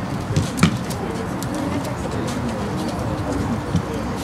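A football struck sharply about half a second in, with a softer knock near the end, over steady outdoor background noise.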